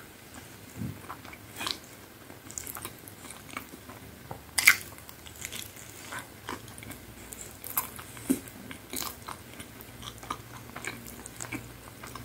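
Close-miked biting and chewing of crisp pizza crust: irregular crunches and mouth clicks, the loudest crunch a little under halfway through.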